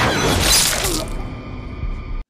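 Horror film soundtrack: a sudden loud crashing, shattering sound effect over the orchestral score, fading within about a second and a half and leaving the music.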